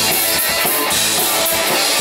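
Live rock band playing an instrumental stretch with no vocals: a drum kit with bass drum and snare driving a steady beat under electric guitars and bass guitar, loud.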